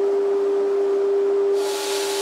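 Combination jointer-planer running in thicknessing mode with a steady whine. About one and a half seconds in a loud hiss joins it as a wood strip feeds through and the cutterhead starts planing.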